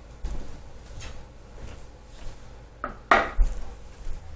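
Footsteps on a hardwood floor, a faint knock roughly every 0.7 s, then a louder, sharper knock about three seconds in.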